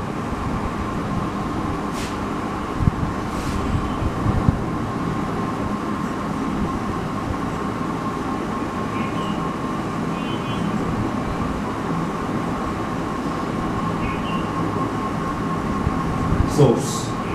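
Steady background noise with a faint even tone running under it. A marker writing on a whiteboard squeaks briefly a few times, and there are two sharp clicks in the first few seconds.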